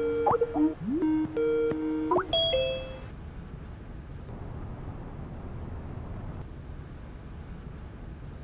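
Video-call ringing tone: a short electronic melody of held tones with upward slides, ending with a brief two-note chime about two and a half seconds in as the call connects. Faint room tone follows.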